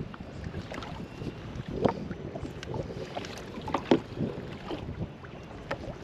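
Wind on the microphone and water against a small skiff's hull, with scattered light clicks and knocks from handling a fishing rod and baitcasting reel.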